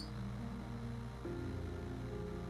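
Soft background music of sustained, held notes; the notes change about a second in.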